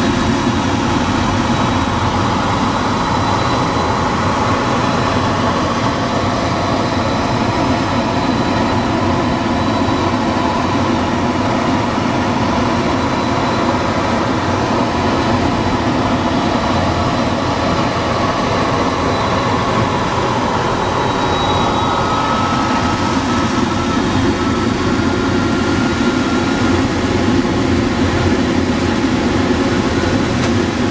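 Steady rush of airflow around a DG-300 glider's canopy, heard from inside the cockpit, with a faint thin high tone held for the first two-thirds.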